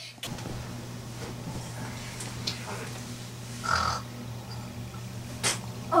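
Crow cawing played as a phone ringtone: a few short harsh caws, the loudest about four seconds in, over a steady low hum.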